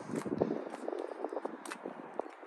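Footsteps on rough tarmac with light rustle, a series of irregular soft clicks.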